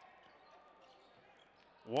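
Faint basketball-arena ambience: a ball being dribbled on the hardwood court over low crowd noise.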